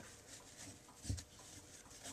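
Faint rustling of fabric ribbon being wrapped over the centre of a bow on a wooden-peg bow maker, with one soft thump about a second in.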